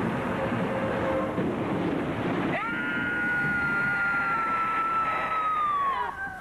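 A loud rushing hiss of the steam or smoke blast from the mutation machine. From about two and a half seconds in comes a long held, high-pitched wail that sags slightly in pitch near the end.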